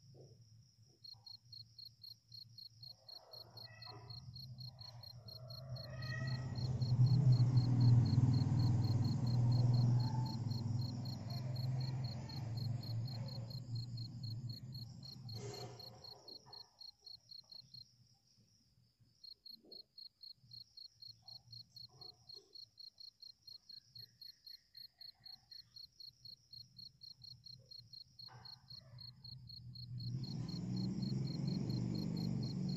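An insect chirping in a fast, steady pulse, with a pause of a few seconds after the middle. A low rumble swells and fades over about ten seconds in the middle and is the loudest sound.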